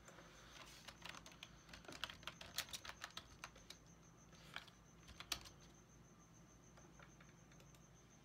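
Faint computer keyboard typing: an irregular flurry of soft key clicks that stops about five and a half seconds in.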